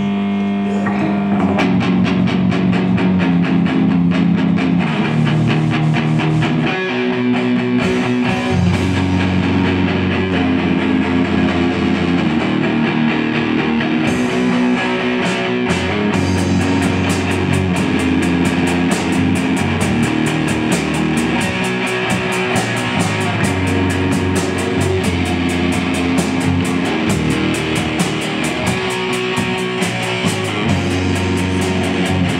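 Live rock band of electric guitar, electric bass and Yamaha drum kit playing an instrumental passage with no singing. It opens on a held guitar chord before the drums come in, and about halfway through the drumming grows busier with fast, steady cymbal strokes.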